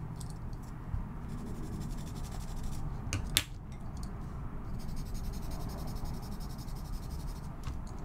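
White chalk pencil drawing over red chalk on toned paper: faint, soft scratching strokes of chalk on paper. One sharp tap a little over three seconds in.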